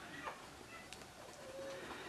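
Faint sound of a coloured pencil working on paper, with a bird calling faintly: a short low note in the second half.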